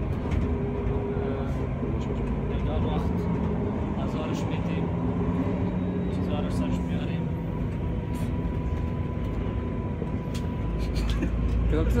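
Steady low rumble and hum inside a moving passenger carriage, with a thin steady whine for several seconds past the middle and faint voices underneath.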